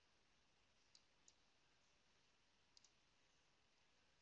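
Near silence with four faint computer mouse-button clicks, two about a second in and a quick pair near three seconds.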